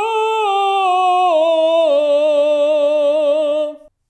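A man sings one long held 'oh' in voce di lontano, a light falsetto with the vocal cords slightly adducted, between true falsetto and full voice, with a steady vibrato. The note drops in pitch twice near the middle and stops shortly before the end.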